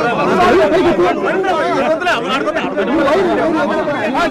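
Several people talking loudly at once, their voices overlapping in a jumble of chatter.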